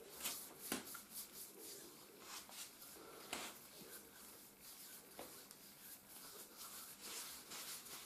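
Faint, irregular rubbing and swishing of oiled hands massaging a bare foot and toes, skin sliding on skin in soft uneven strokes.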